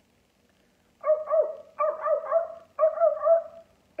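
A woman's voice imitating sea lion barks: three loud, high-pitched barking calls, each of two or three short syllables, starting about a second in.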